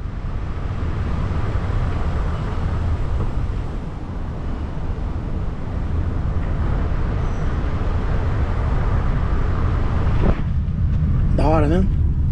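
Steady tyre, road and wind noise from a car driving slowly on a paved road, picked up outside the car's window. About ten seconds in it changes abruptly to the car's cabin sound.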